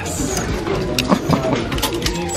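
Clear plastic hangers clicking and scraping along a metal clothing rail as garments are pushed aside, a scattered series of short clicks.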